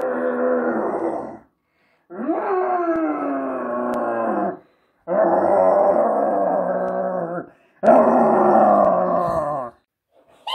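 Four long, drawn-out monster groans, each about two seconds, separated by clean gaps of silence.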